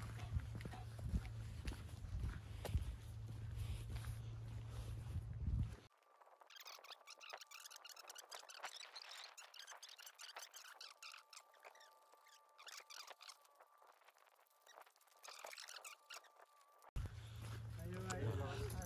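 Wind rumbling on the microphone during a walk for about six seconds. Then a sudden cut to a thin, fast, high-pitched chatter of voices, which cuts off again about a second before the end.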